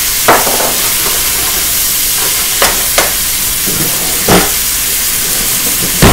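Chicken and vegetables sizzling in a hot stir-fry pan, a steady hiss, with four short scrapes of a wooden spatula stirring against the pan.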